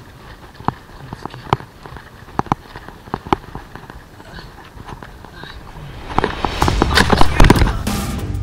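Mountain bike rolling over loose rocky gravel, with sharp clicks and knocks of stones against the tyres and frame. About six seconds in comes a loud crash: the bike and rider go down and tumble and scrape across loose rocks.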